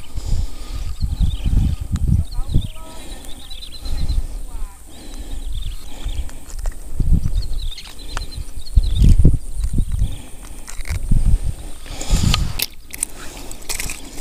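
Irregular low rumbling and thumps of wind and handling on a body-worn camera's microphone, with faint high chirps coming and going in between.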